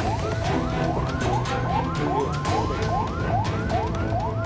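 Ambulance siren sounding in fast repeated rising yelps, about three a second, with a steady tone held under them, over a low engine rumble.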